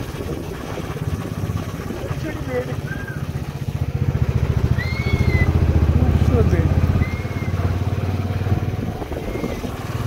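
Motorcycle engine running at low road speed, its rumble growing louder for a few seconds in the middle. Several short, high arched chirps sound over it at intervals.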